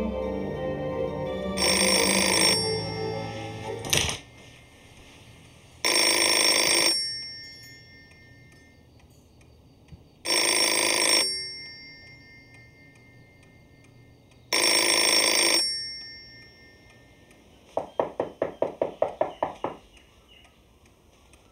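A telephone bell ringing four times, each ring about a second long and about four seconds apart. Near the end comes a quick run of about a dozen sharp taps.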